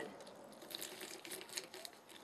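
Faint scattered crackling and squishing of a pomegranate half being pressed and twisted on a manual citrus juicer.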